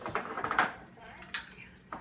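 Dishes clinking: a quick cluster of clinks about half a second in, then two single clicks later.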